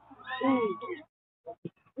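A person's drawn-out, meow-like vocal cry lasting about a second, its pitch curving up and then down, followed by a couple of short faint clicks.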